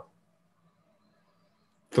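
Near silence in a pause between spoken sentences, with only a faint steady low hum; a man's voice resumes near the end.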